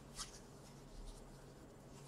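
Near silence: faint room tone, with a couple of tiny, brief soft noises.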